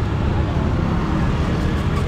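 Steady rumble of street traffic, with passing car and motorbike engines.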